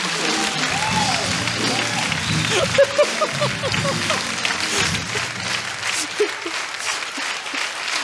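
Studio audience applauding after a joke's punchline, with music playing along for the first few seconds. The applause eases off toward the end.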